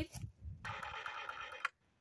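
Porter-Cable cordless reciprocating saw with a wood pruning blade run briefly on a light trigger pull, the blade moving slowly, for about a second before stopping suddenly.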